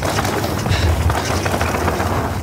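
Wind rushing over the camera's microphone and tyres rolling on a dirt trail as a mountain bike is ridden along at speed, a steady rumbling rush with no break.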